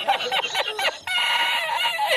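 A man's high-pitched, wheezing fit of laughter. It comes in short gasping bursts at first, then breaks about halfway through into one long, held, squealing note.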